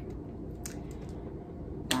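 Room tone: a low steady hum with a couple of faint clicks about halfway through. A spoken word begins at the very end.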